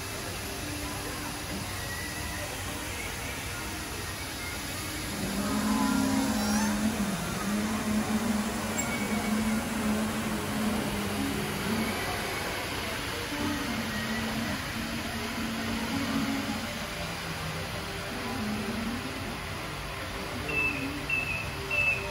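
Busy store ambience, a steady background hum, with music playing over it from about five seconds in. Three short high beeps come near the end.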